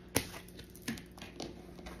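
Tarot cards being handled and tapped down on a wooden table: a sharp tap just after the start, then a couple of lighter taps.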